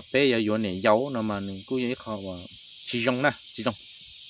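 A man talking in bursts over a steady, high-pitched chirring of crickets.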